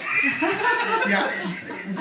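Chuckling laughter with a short spoken "ja" near the end.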